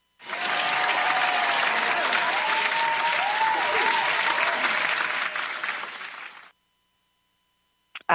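Crowd applause with a few cheers, starting suddenly and cutting off abruptly about six and a half seconds in.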